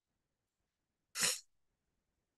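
A person sneezing once, briefly, a little over a second in.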